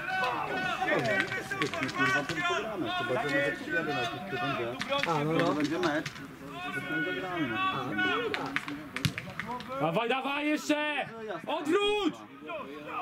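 Several men's voices calling and talking over one another on a football pitch. There are a few sharp knocks near the end.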